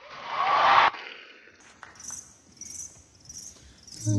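A swell of crowd cheering and screaming that cuts off suddenly just under a second in, then soft, sharp vocal hi-hat hisses from an a cappella beatboxer, repeating about every half-second.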